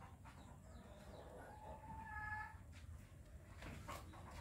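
A faint bird call, heard once as a short pitched call about two seconds in, over a steady low background rumble.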